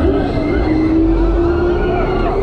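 Huss Take Off fairground ride in motion, heard on board: a steady whine that rises slowly in pitch, over a low rumble of wind on the microphone.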